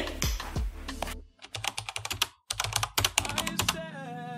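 Computer-keyboard typing sound effect: a fast run of key clicks beginning about a second in, with a brief pause midway, over faint background music.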